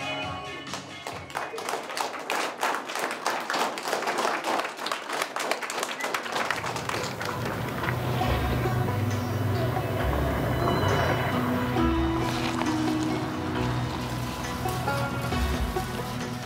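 Dense clapping for the first six seconds or so, then background music with low held notes takes over.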